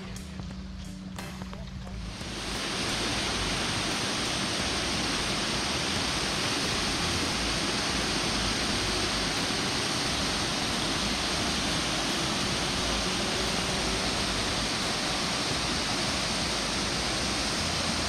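Waterfall: a steady rush of water falling over rock, coming in about two seconds in after a quieter opening and holding even throughout.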